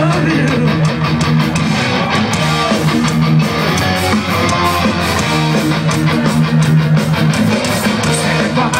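Live punk rock band playing loud distorted electric guitars over bass and drums, with sustained bass notes that shift pitch.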